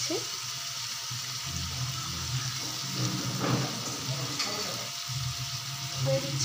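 Julienned potato, carrot and onion tipped from a steel strainer into hot oil in a nonstick pan, sizzling steadily, with a low hum underneath.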